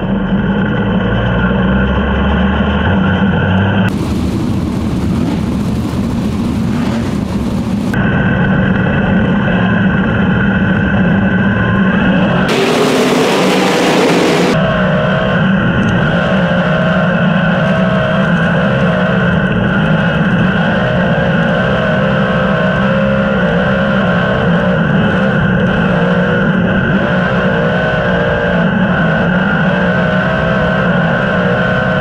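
Winged sprint car's V8 engine running on the track, picked up by a camera mounted on the car. The engine note holds fairly steady, with a rush of noise from about four to eight seconds in and a shorter one around thirteen seconds in.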